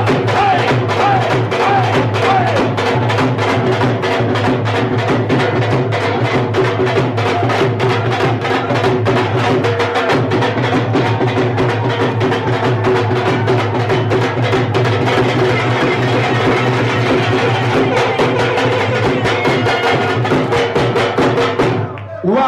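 Several dhol drums played together in a fast, dense rhythm over loud backing music with a steady bass. The sound cuts off suddenly at the very end.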